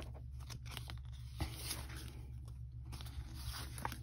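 Paper sticker sheets rustling and sliding against each other as they are handled and shuffled, with a few small clicks and a steady low hum underneath.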